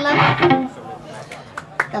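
A voice speaking over the stage sound system, trailing off about half a second in, then a quieter lull with a few short clicks and knocks near the end.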